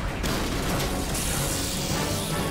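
Cartoon action sound effects over score music: a dense mix of mechanical whirring and booms, with a loud rushing hiss coming in about a second in.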